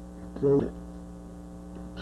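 Steady electrical mains hum underlying the recording, with one brief syllable of a man's voice about half a second in.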